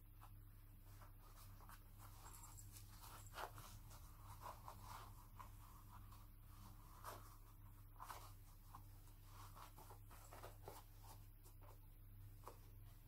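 Near silence: faint fabric rustling and a few soft clicks as baby-doll clothes are handled, over a steady low electrical hum.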